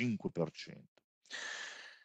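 A man's speech trails off, and after a short pause he takes an audible breath in, lasting about two-thirds of a second, before speaking again.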